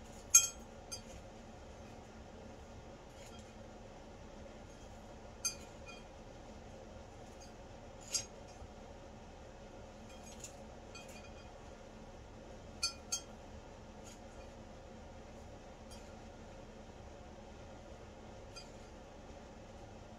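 Scattered light clinks of small glass items on a table, about seven in all: the sharpest just after the start, a pair in quick succession about thirteen seconds in, over a faint steady hum.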